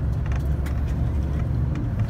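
Steady low rumble of a moving tour bus's engine and road noise, heard from inside the bus.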